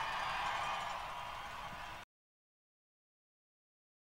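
Faint arena crowd noise, cheering for the player just announced, slowly fading. It cuts off abruptly about halfway through, leaving dead silence.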